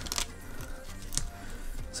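Quiet background music with short held notes, with a couple of faint clicks and rustles from handling a battery lead and its tape pocket.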